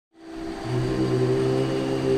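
Musical drone: several steady held notes that fade in at the start, with a lower note joining about half a second in.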